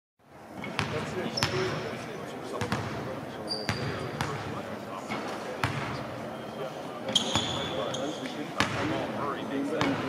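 Basketballs bouncing on a hardwood court in a large empty arena, with irregular thuds about once a second. A few short, high squeaks, typical of sneakers on the floor, come about a second in, near the middle and after seven seconds.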